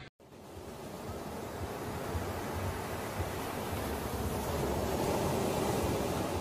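Ocean surf, a steady rush of breaking waves that builds slowly and eases off near the end.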